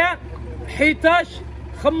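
A man speaking in short bursts, reading out digits, over a steady low rumble.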